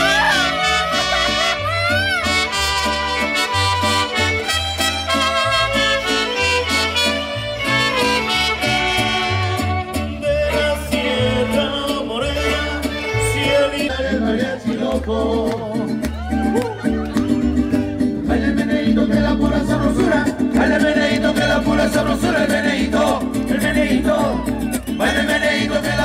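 A live mariachi band plays a lively dance tune: trumpets and violins carry the melody over guitars and a steady bass beat, with singing in places.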